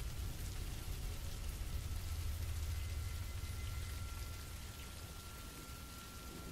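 Dark ambient background music, slow and rumbly: a low rumble under a soft hiss, with a thin, steady high whine coming in about halfway. It gets slightly quieter towards the end.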